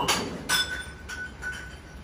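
Two clinks of a hard object, the second about half a second in and ringing on for about a second.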